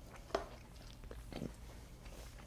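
Faint sounds of a man eating a spoonful of buttered sweet corn kernels cut off the cob: a sharp click near the start, then a few soft mouth sounds as he chews.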